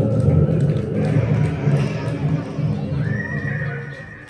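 Live black metal band playing loud, dense distorted music that stops abruptly near the end; a high sustained tone starts about three seconds in and rings on past the stop.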